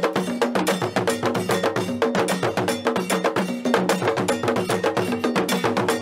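Traditional Ghanaian ceremonial percussion: a metal bell struck in a fast, steady rhythm over pitched drums.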